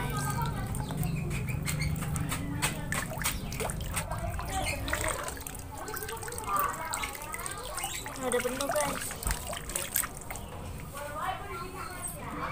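Water from a garden hose being fed into the tin-can boiler tube of a homemade pop-pop (otok-otok) boat and spilling out, trickling and dripping into a pond. There are many small splashy clicks, thickest in the first half.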